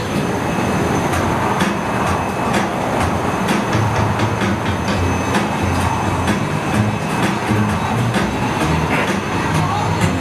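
Steady roar of a glassblowing studio's furnace and burners, with irregular clicks and knocks of a steel blowpipe being rolled and handled on a steel marvering table.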